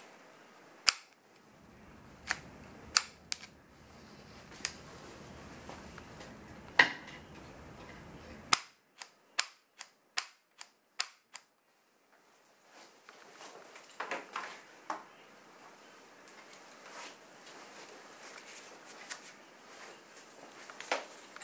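Sharp metallic clicks of animal control catch poles being worked: the cable noose's locking and release mechanism snapping as the noose is pulled tight and let go. A quick run of clicks about half a second apart comes near the middle, with softer handling clicks and rattles later.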